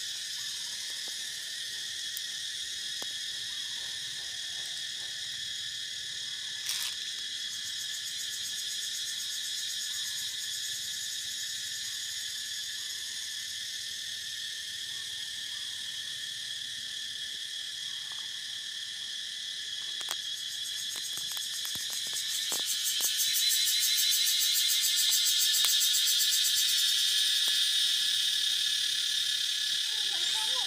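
High-pitched insect chorus buzzing steadily, swelling louder with a fast pulsing about three-quarters of the way through, with a few faint clicks.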